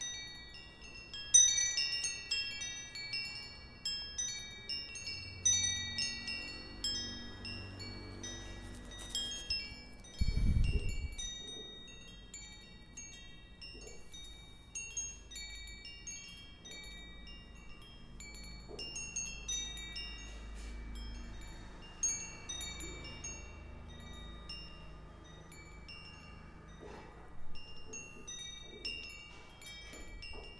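Wind chimes tinkling: many short, high, ringing notes at irregular intervals, each fading away, with a low thud about ten seconds in.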